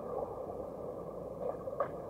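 Muffled underwater pool noise from swimmers in fins churning the water, heard from below the surface, with a few short knocks near the end.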